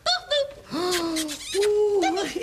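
A voice giving drawn-out hooting "ooh" sounds: a couple of short ones, then two longer held ones, the last slightly higher.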